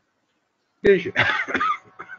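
A person clearing their throat, starting about a second in with a sharp cough-like onset and lasting under a second.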